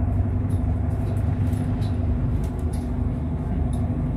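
Bus engine running steadily, heard from inside the passenger cabin as a low hum, with a few faint clicks and rattles over it.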